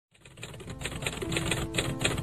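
Intro music fading in, driven by a fast clicking rhythm of about four clicks a second, like typewriter keys. A steady held note comes in about a second in.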